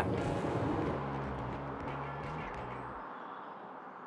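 Road noise inside the cabin of a moving Toyota RAV4 Hybrid: a steady rush with a low hum, fading gradually, the hum dropping out about three seconds in.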